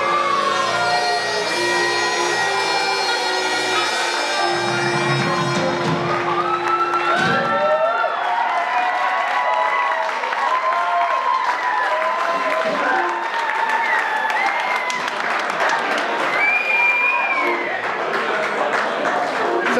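A band tune with bagpipes ends: the bagpipe drone and the band stop about seven seconds in. The audience then applauds and cheers, with whoops, for the rest of the time.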